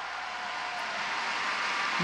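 Large arena crowd applauding at the end of a skating program, a steady wash that grows slightly louder toward the end.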